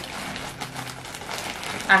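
Plastic poly mailer bag crinkling and rustling as it is pulled open by hand.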